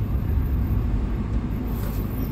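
Steady low rumble of a car's engine and road noise, heard from inside the cabin as the car drives.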